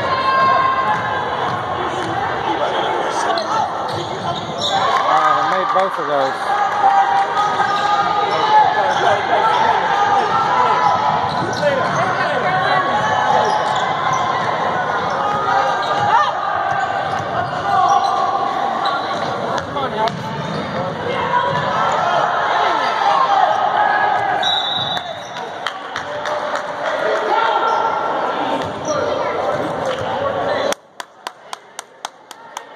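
Basketball bouncing on a hardwood gym floor during play, with voices from spectators and players, echoing in the large gym.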